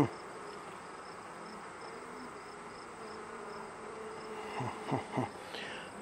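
Steady buzzing of honeybees around an open nuc as a frame of bees is held up, with a sharp click right at the start.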